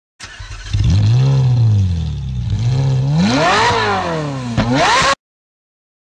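Audi R8's 5.2-litre V10 engine revved up and down three times, quieter for the first half second and then loud. The sound cuts off abruptly about five seconds in.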